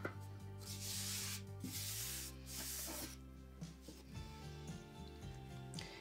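Two soft rubbing rustles, about one and two and a half seconds in, from a small woven piece and its cardboard backing being handled and slid on a wooden tabletop, over quiet background music.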